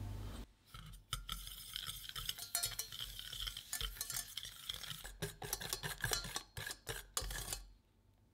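Wire balloon whisk beating egg yolks and sugar in a stainless steel saucepan: rapid, dense clicking and scraping of the wires against the metal pan. It starts about half a second in and stops shortly before the end as the whisk is lifted from the pale, thickened mixture.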